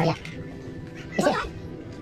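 Background music with steady held tones. A little over a second in comes one short, loud cry from a voice, its pitch wavering.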